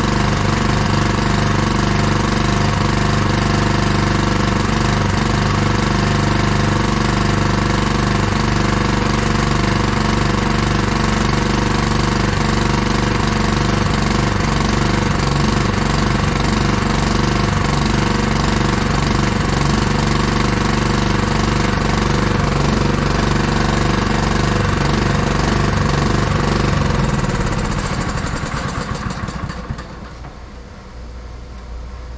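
Cement mixer's small gasoline engine running steadily on almost full choke, a sign that the carburetor still has a fault. It winds down and stops in the last few seconds.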